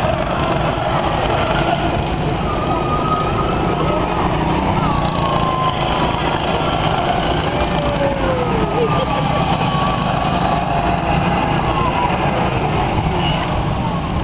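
Go-kart engines running around the track, their pitch rising and falling as the karts speed up, slow for corners and pass by, over a steady noisy bed.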